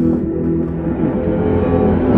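Film score music playing over a cinema's sound system: held low tones that give way to a denser, rumbling texture.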